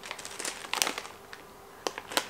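Plastic sweet packets (mint M&M's sharing-size bags) crinkling as they are handled and lifted, a scatter of irregular crackles.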